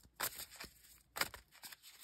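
Tarot cards being handled on a cloth: two brief, faint rustles about a second apart, with a few smaller ones between.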